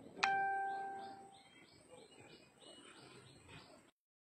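A single bell-like ding sounds just after the start and fades over about a second, followed by a run of short, high bird chirps, about two or three a second.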